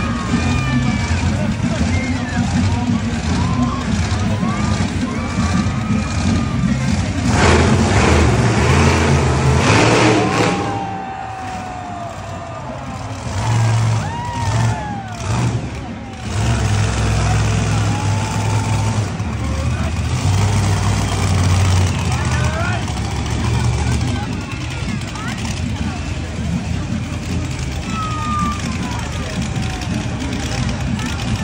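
Monster truck engines rumbling on the arena floor, with a louder surge of noise about seven to ten seconds in. Crowd voices and children's shouts run over it in the echoing arena.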